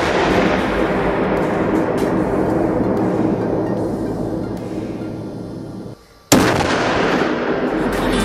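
Explosive charge detonating beside an armoured car: a sudden blast that dies away over about six seconds, then a second sudden blast about six seconds in.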